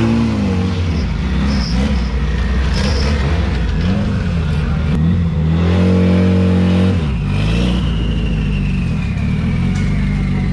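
A car engine revved in several quick rises and falls, then held at high revs for about a second and a half before dropping back. After that a thin high whine slides slowly down in pitch.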